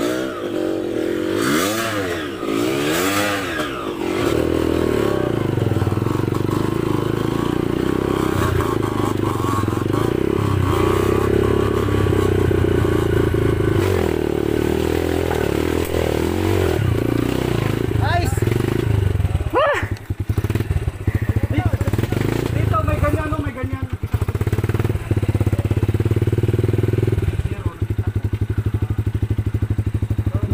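Off-road dirt bike engines revving and running on a steep trail climb. The pitch rises and falls over the first few seconds, then holds steady, with a sharp rev about twenty seconds in. Near the end an engine idles with an even pulsing beat.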